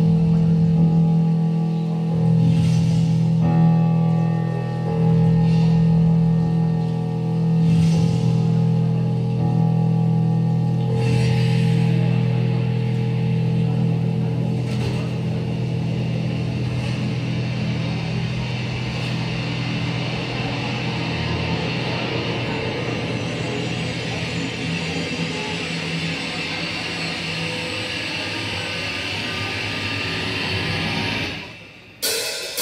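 Live progressive rock band playing a slow instrumental opening: sustained guitar and keyboard chords, with a shimmering cymbal wash building up from about a third of the way in.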